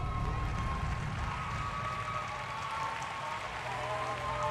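Applause and faint cheering from a small crowd, an even clapping noise with a few voices calling out.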